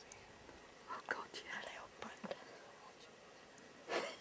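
Hushed whispering voices for about a second, starting about a second in, then a single sharp click near the end.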